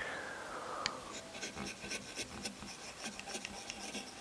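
Hand carving gouge cutting fine hair lines into dry wood: a quick, irregular run of small scratchy cuts, several a second.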